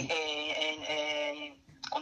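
A person's voice holding a long, steady hesitation vowel, an 'eeh', for about a second and a half, then a brief pause before speech resumes.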